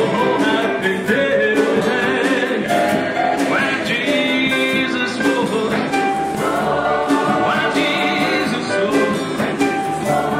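A male lead singer and a mixed choir singing a gospel-style song together, the soloist on a handheld microphone.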